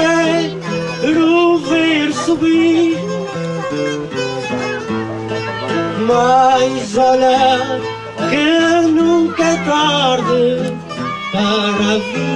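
Plucked acoustic guitars playing the instrumental interlude between sung verses of an improvised cantoria: a wavering melody over steady bass notes.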